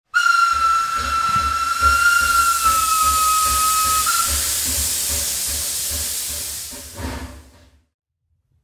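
Steam locomotive whistle blowing one long, slightly falling note for about four seconds over loud hissing steam. The hiss carries on after the whistle stops, with a low pulsing underneath, then fades out shortly before the end.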